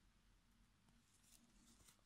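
Near silence: room tone, with a few faint brief rustles in the second half.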